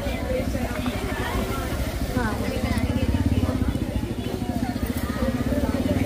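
An engine running steadily close by, a low pulsing hum that grows stronger about two seconds in, under the chatter of voices in a crowd.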